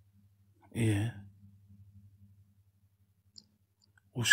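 A single short breathy vocal sound, like a sigh, about a second in, then quiet with a faint steady low hum and one small click near the end.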